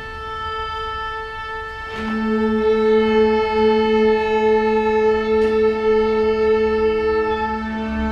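A string orchestra (violins, cellos, double bass) playing long held notes: a sustained high note, joined about two seconds in by a lower held note as the sound grows louder.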